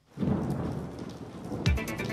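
Recorded rain-and-thunder sound effect introducing a radio weather report: a steady hiss of rain, with a low thunder rumble about a second and a half in, where a music bed with a regular beat starts.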